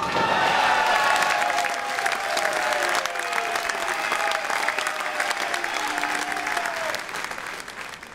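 Audience applauding, with a few voices calling out over the clapping. The applause fades out about seven seconds in.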